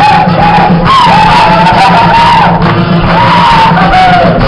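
Loud live Oaxacan Guelaguetza folk-dance music: a bending melody line over a steady low accompaniment, with shouts mixed in.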